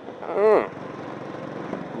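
Suzuki Boulevard S40 motorcycle's single-cylinder engine running steadily at cruising speed under wind noise on the microphone, with a short voice call about half a second in.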